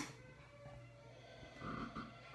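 A short, soft sniff about three quarters of the way in, a person nosing a glass of dark beer, over a quiet room.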